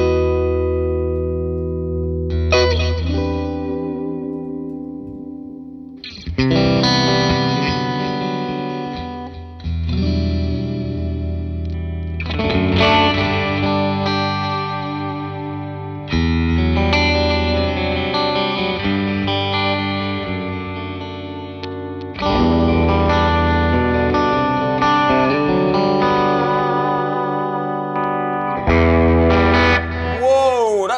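FGN J Standard Odyssey JOS2FMM electric guitar with Seymour Duncan pickups played through an amp. It plays a run of ringing chords and phrases, each new phrase struck hard and left to ring and fade over a few seconds.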